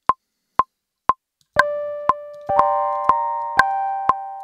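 Logic Pro's metronome click counting in, two ticks a second, with an accented downbeat about one and a half seconds in. From that downbeat, keyboard notes are recorded, ringing and decaying, while the click keeps time.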